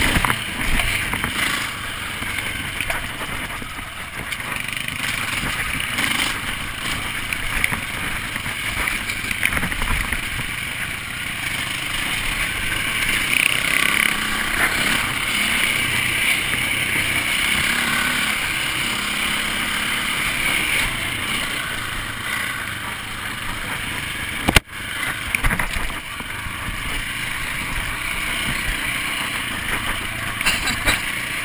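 KTM dirt bike's engine running steadily while the bike is ridden along a dirt trail. The sound drops out briefly once, about five seconds before the end.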